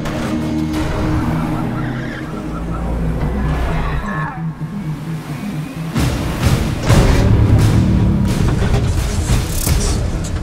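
Film score with sustained low notes, mixed with heavy-truck engine and road noise. About six seconds in, a louder stretch of crashing and clattering impacts begins over the music.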